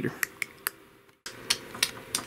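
About half a dozen light, sharp clicks, irregularly spaced a quarter to a third of a second apart, with the sound dropping out completely for a moment about a second in.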